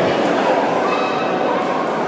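Spectators' voices in a sports hall, talking and calling out, with one short high call about a second in.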